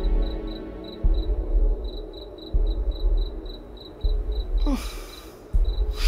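Crickets chirping steadily, about four chirps a second, over a deep bass pulse that repeats every second and a half and is the loudest sound. Near the end comes a short downward swoosh.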